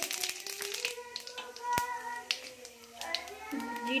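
Cumin seeds sizzling and crackling in hot oil in a steel kadhai (tempering), with many small pops and one sharper click a little under two seconds in.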